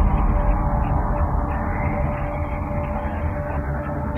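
A vehicle driving over a rough, muddy dirt track, heard from inside the cab: a steady low rumble of engine and tyres.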